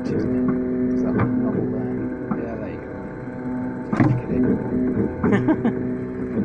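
Stepper motors of a Velleman Vertex K8400 3D printer whining at steady pitches that switch and stop as the print head moves over the bed, with a sharp knock about four seconds in.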